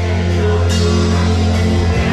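Live grupero band playing through a loud PA: a bass note held steady under the band, with a cymbal crash a little under a second in.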